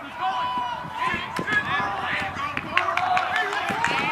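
Several voices shouting and calling out over one another during lacrosse play, with a few sharp clacks.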